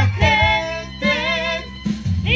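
A romantic song: a singing voice holding long notes with vibrato over instrumental accompaniment with steady bass notes, with a short break between phrases.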